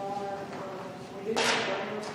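Distant talking in a room, with one short, sharp burst of noise about a second and a half in that is the loudest thing heard.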